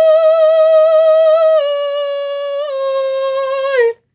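A woman singing unaccompanied, holding a long final note with vibrato. The pitch steps down twice and sags at the very end, and the note cuts off just before the end.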